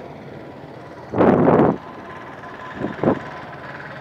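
Steady roadside background noise, with a short burst of rushing noise about a second in and fainter ones near three seconds.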